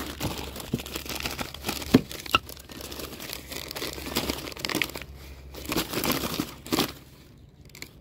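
Crumpled newspaper rustling and crinkling as it is handled and pulled apart, with a few sharp clicks about two seconds in; it dies down near the end.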